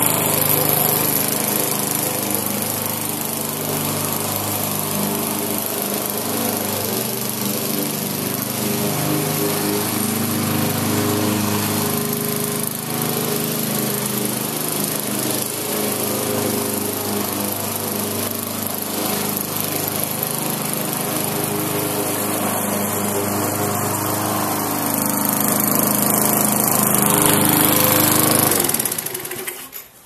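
1994 Murray push mower with a 3.5 HP Briggs & Stratton Classic single-cylinder engine running steadily while cutting grass. It grows louder as it comes close near the end, then is shut off and winds down just before the end.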